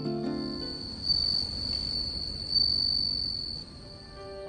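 Crickets trilling in one continuous high-pitched note, swelling slightly twice, as soft background music stops about half a second in.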